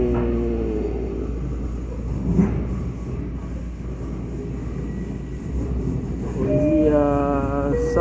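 Steady low rumble of a commuter train car running on the rails, heard from inside the passenger cabin. Near the end a voice holds a long note over it.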